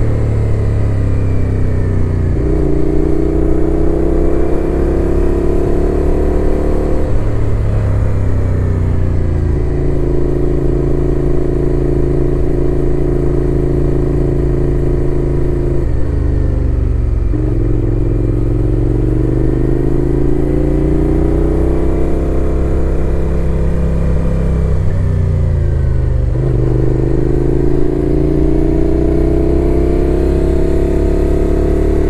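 Suzuki Gladius 400's V-twin engine under way on track, its pitch climbing under acceleration and dropping back at gear changes and lift-offs several times.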